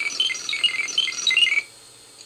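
Electronic bleeping from a Mego 2-XL robot's 8-track tape, played through the toy's speaker: a fast, uneven run of short high beeps, the robot's 'thinking' effect before it gives the verdict on an answer. The beeps stop about one and a half seconds in.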